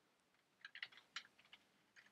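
Faint computer keyboard typing: a quick run of keystrokes starting about half a second in and lasting about a second.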